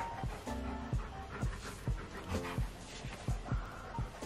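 Soft background music with a steady beat, over a dog panting.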